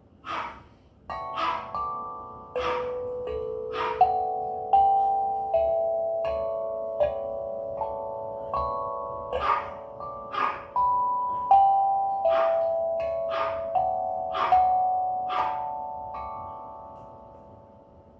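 A 6-inch, 11-note steel tongue drum tuned to D major, struck note by note with a rubber mallet in a slow, wandering melody. Each strike gives a sharp click and then a clear ringing tone that runs into the next note, at about one note a second. The ringing dies away near the end.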